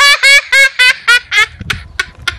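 A young boy laughing loudly in a quick run of high-pitched 'ha' bursts, about four a second, trailing off after about a second and a half.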